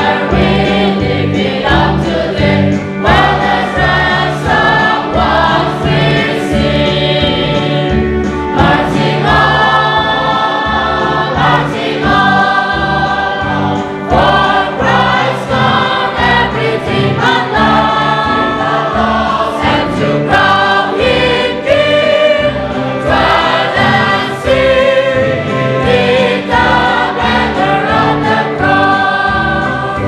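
Church congregation of women and men singing a hymn together, the held sung notes changing every second or two.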